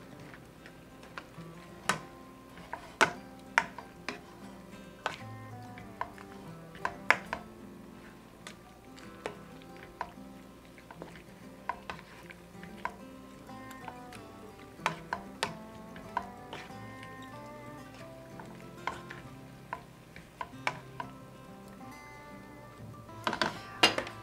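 A metal utensil clinking and scraping against a frying pan at irregular intervals as seasoned venison cubes are stirred, over steady background music.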